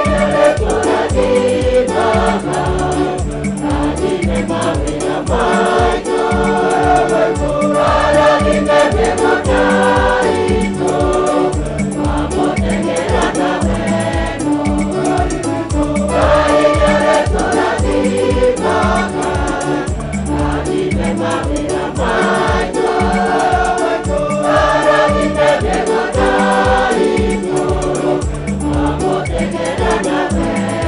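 Choir singing an upbeat gospel hymn over a steady drum beat.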